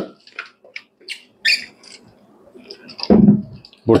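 Clear plastic water bottle of a portable dental unit being handled and fitted to the unit, giving a series of short, irregular plastic clicks and knocks.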